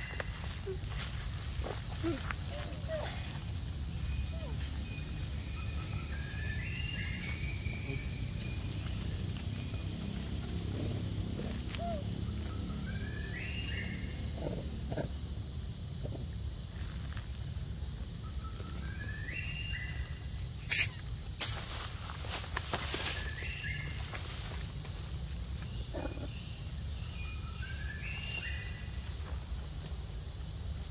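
Outdoor forest ambience: a steady high insect drone, with a short rising call repeating every four to five seconds. Two sharp knocks come about twenty-one seconds in.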